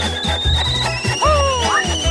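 Upbeat background music with a steady bass beat and high held tones, and a falling sliding tone in the second half.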